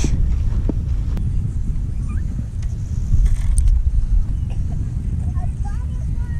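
Wind rumbling and buffeting on the camera microphone, with a few knocks in the first second and faint short whistles near the end.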